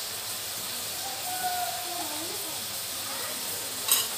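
A steady hiss with a faint, distant voice in the background, and a short click near the end.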